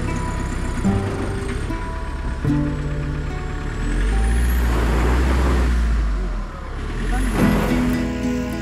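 Background music over an SUV's engine running under load. From about four seconds in, a louder, deeper engine sound lasts a couple of seconds as the vehicle struggles through deep mud.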